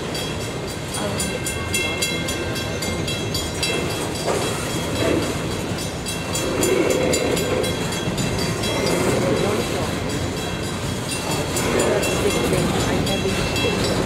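A string of loaded-style coal gondolas rolling past over a grade crossing: a steady rumble of steel wheels on rail with quick, repeated clicking as the wheels cross the joints. Faint thin high-pitched tones ring over the top.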